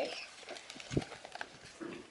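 Camera handling noise: the phone's microphone rubbing against clothing, with a dull bump about a second in.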